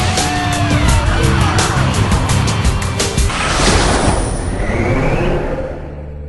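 Loud rock soundtrack music with a fast drum beat. About halfway through the drums stop and a rushing, rumbling swell rises and then fades away.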